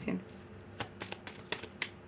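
A deck of cards being shuffled by hand, heard as a few quiet, sharp card clicks spread through the second half.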